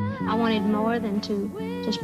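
A woman speaking from an archival television interview over a steady background music bed.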